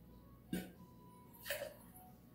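Two short metallic clinks of bar tools, a stainless jigger knocking against a metal cocktail shaker tin as a measure of dry curaçao is tipped in. The first clink leaves a brief ringing tone.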